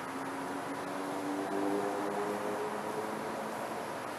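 Steady background hiss, with a faint distant vehicle sounding several held tones together through the first three seconds.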